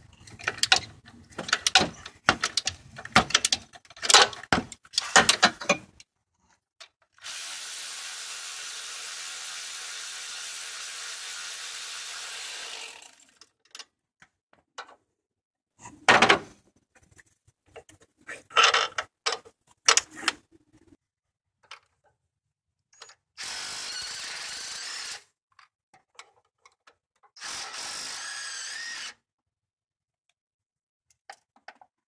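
Tools working on engine-bay bolts: rapid ratcheting clicks in short runs, then a cordless power tool spinning a socket in three steady runs, one of about six seconds and two of about two seconds, with scattered knocks and clicks between.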